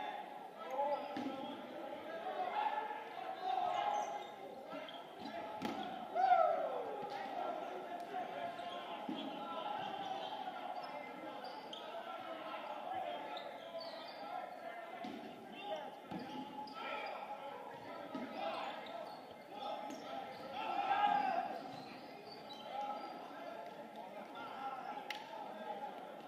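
No-sting dodgeballs bouncing and thudding on a hardwood gym floor and off players, again and again at irregular moments, in a gymnasium, with players shouting and calling out between the impacts.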